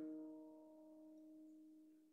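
A held piano chord, the last of the prelude, slowly dying away as a few faint sustained notes.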